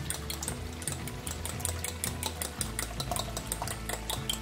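Beaten egg being whisked with a fork in a glass bowl, the fork clicking against the glass about five times a second, with the stew simmering in the pan below.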